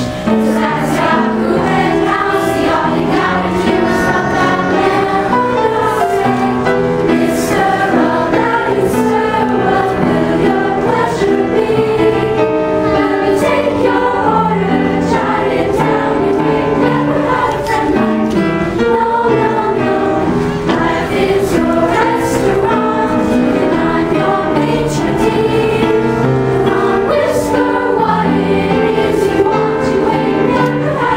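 Combined middle school choirs singing a Disney song medley, the young voices holding sustained notes together through the whole stretch.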